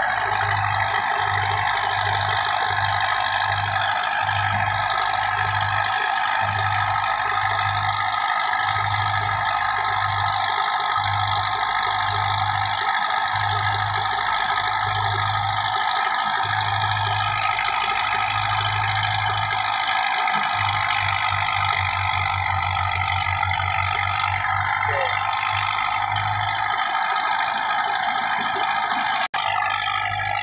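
Belarus 510 tractor's diesel engine running under load while driving a wheat thresher, with the thresher's drum and blower making a loud, steady hum. Underneath is a low throb that pulses unevenly, then quickens into a fast even beat for a few seconds. The sound drops out for a moment near the end.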